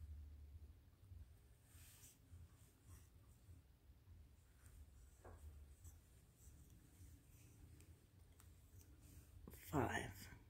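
Near silence: faint rustling and a few small ticks of yarn being drawn through with a crochet hook as double crochet stitches are worked.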